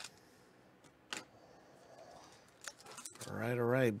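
Crinkly plastic wrapper of a trading card pack being handled and opened, with a few sharp clicks, the loudest about a second in.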